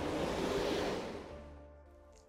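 Steady rushing outdoor noise that fades away from about a second in, with faint soft background music underneath.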